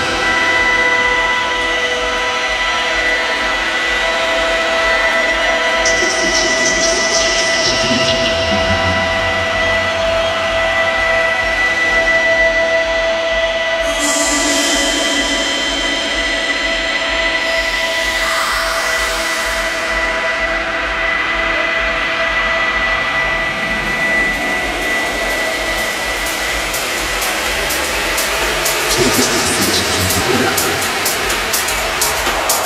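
House music from a DJ set played over a club sound system, in a stretch of held synth tones and noise with a rising sweep about two-thirds of the way through. Sharp, regular percussion comes back in near the end.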